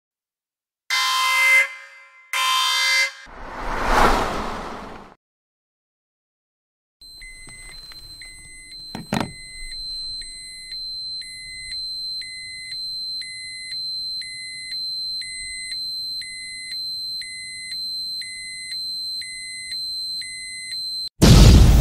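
Edited intro sound effects: two horn-like blasts, then a whoosh. After a short silence comes a steady high whine with a short beep repeating about every three-quarters of a second, and a single sharp click about nine seconds in.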